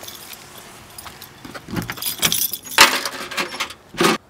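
A bunch of car keys with a key fob jangling and clinking in hand, in irregular rattles that are loudest about two to three seconds in. A thunk comes right at the end as the car's trunk opens.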